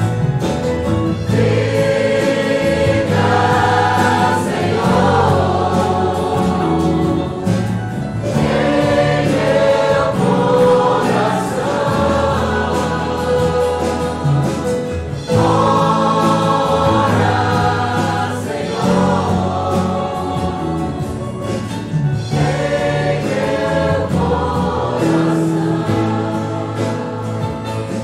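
A choir singing a Portuguese-language gospel hymn in phrases, accompanied by a small worship band of acoustic guitars, electric keyboard and drums.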